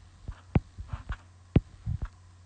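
Stylus tapping on a tablet screen while drawing, several sharp taps spaced unevenly, the loudest about one and a half seconds in, over a steady low electrical hum.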